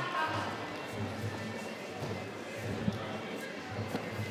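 Quiet arena background: low music with faint voices, no single loud event.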